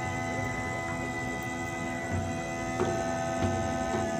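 Bulgarian gaida bagpipe sounding a steady drone with long held notes, the notes changing about three seconds in.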